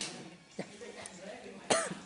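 A person's voice: a word at the start, then a short, loud, cough-like vocal burst near the end.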